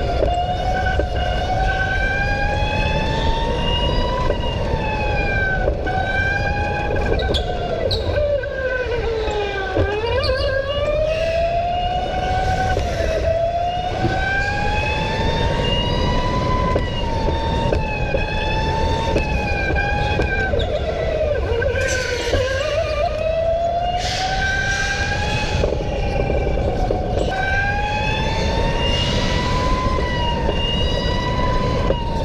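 Electric go-kart's motor whine rising as the kart gathers speed and dropping each time it slows for a corner, most sharply twice, over a steady low rumble.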